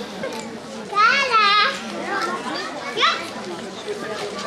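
Crowd chatter with children's voices. A child gives a loud, high, wavering squeal about a second in, and a shorter rising cry near the end.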